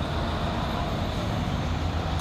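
Steady low rumble of road traffic noise from a street jammed with stopped vehicles.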